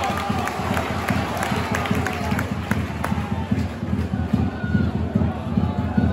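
Football stadium crowd: a general mix of spectators' voices and shouts around the stands, over a constant choppy low rumble.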